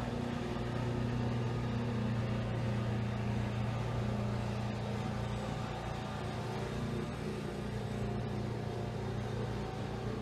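Steady low hum of a motor-driven appliance, a constant drone with no change in pitch or level.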